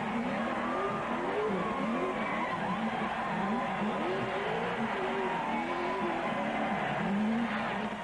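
A large crowd shouting and cheering, many voices whooping and yelling over one another in a continuous din.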